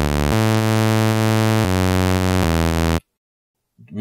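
Xfer Serum soft synth playing its default raw sawtooth wave from oscillator A, unfiltered, as a low bass line: held notes changing pitch three times, bright and buzzy with overtones reaching very high, then stopping about three seconds in.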